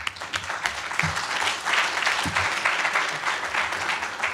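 Audience applauding, a dense steady patter of many hands clapping.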